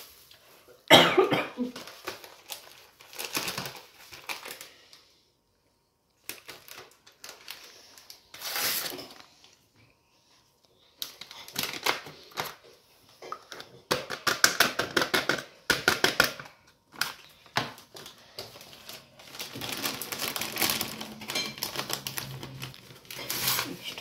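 Paper pudding-mix packets being handled, crinkled and torn open: irregular bursts of rustling and crackling separated by short pauses, with a sharp burst about a second in.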